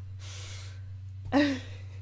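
A woman's sharp breathy intake of breath, then a short voiced laugh about a second and a half in, over a steady low hum.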